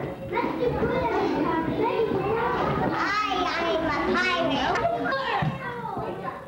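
A group of young preschool children talking over one another. Their high-pitched voices overlap throughout and are loudest a little past the middle.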